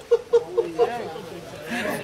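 A man laughing in a quick run of short, even bursts, held back with his hand over his mouth, fading in the first second, then quieter background chatter.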